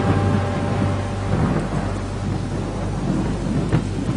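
Thunderstorm sound effect: a steady hiss of rain over a deep rumble of thunder.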